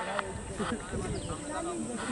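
Faint background chatter of several distant voices on an open field, with no loud sound in the foreground.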